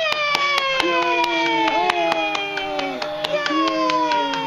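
A woman's long, drawn-out cheering "yaaay", held in a high voice that slides slowly down in pitch and is taken up again a couple of times, with light hand clapping, several sharp claps a second, over it.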